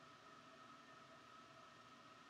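Near silence: faint steady background hiss with a thin steady tone.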